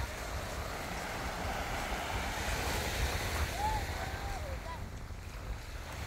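Small waves washing onto a sandy beach, with wind rumbling on the microphone. Faint distant voices come through about halfway through.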